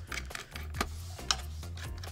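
Small precision screwdriver turning a screw in a mini PC's metal bottom cover: a few light, irregular clicks, two of them sharper, about a second in and again half a second later.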